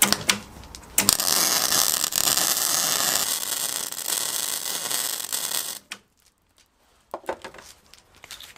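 MIG/MAG welder's arc crackling steadily on steel from about a second in until it cuts off near six seconds. It is welding without shielding gas, so the molten steel reacts with the oxygen in the air and the weld bubbles up.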